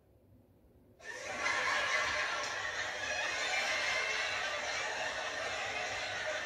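Canned audience laughter from a crowd, cutting in suddenly about a second in after a moment of dead silence and holding at a steady level.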